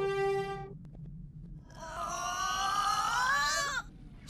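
A held musical note cuts off under a second in. About two seconds of a wavering, cry-like cartoon voice follows, its pitch warbling and then dropping away at the end, the audio distorted by effects.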